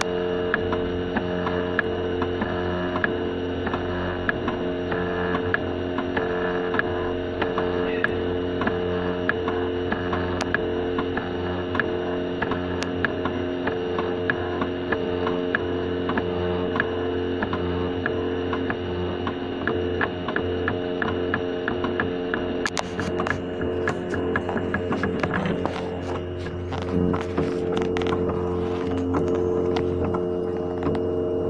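Velleman Vertex K8400 3D printer printing: its stepper motors whine in several steady tones with small ticks as the print head moves, over the hum of the hotend cooling fan. The ticking gets busier about three-quarters of the way through.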